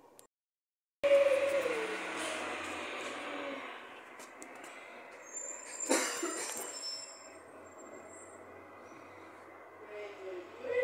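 A large vehicle passing outside, starting abruptly and loud about a second in with a falling engine note, then fading. A short, sharp, high squeal comes near the six-second mark.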